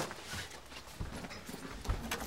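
Clothes rustling and hangers knocking as garments are hurriedly pulled out of a cloth wardrobe and dropped on the floor: a few soft, irregular knocks, the clearest about a second in and near the end.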